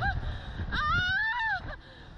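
A rider's long, high-pitched scream that rises and then falls, let out in fright while flung up on a slingshot reverse-bungee ride. A steady low rumble of wind on the microphone runs underneath.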